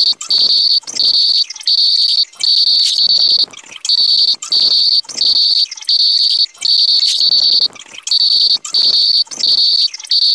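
A loud, high-pitched tone cut into repeated chirps of about half a second each, roughly one and a half a second, with short gaps between them.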